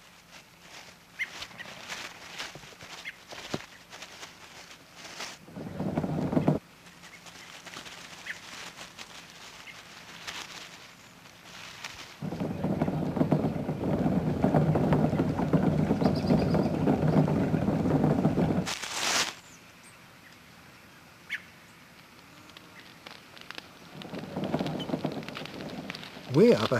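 Leaves being raked: a rustling, scraping noise, loudest in a long stretch about halfway, with fainter rustles and scattered clicks before it and a rising rush near the end.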